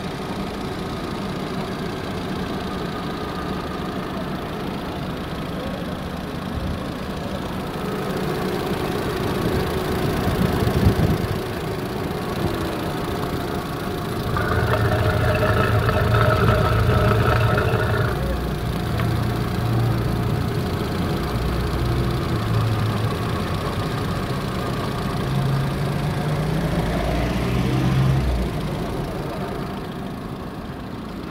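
Volkswagen Gol Trend's four-cylinder engine idling steadily, growing louder and brighter for a few seconds midway.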